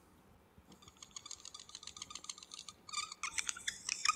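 Marker pen squeaking on a whiteboard in quick, irregular strokes, as in an animated whiteboard-drawing video. It starts faint about a second in and grows louder.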